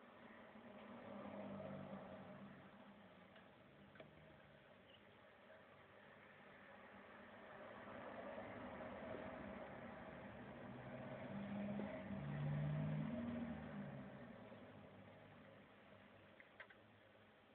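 Faint low engine hum that swells and fades twice, loudest about twelve seconds in, with a single small click about four seconds in.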